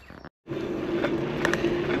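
E-bike riding along a lane: a steady motor hum over tyre and road noise, starting after a brief dropout about half a second in.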